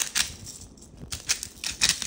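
Wooden pepper mill being turned by hand, grinding in a few short bursts of crackling clicks.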